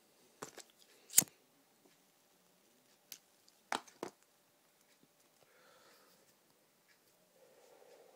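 A cigarette lighter clicked several times, the loudest about a second in and two more close together about four seconds in, as a cigarette is lit. Faint drawing on the cigarette follows, then a soft breath out near the end.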